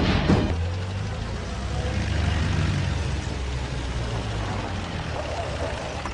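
A motor vehicle's engine running, a steady low rumble.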